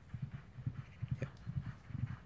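Hoofbeats of two ridden racehorses approaching along a gravel track: a faint, quick, irregular run of low thuds.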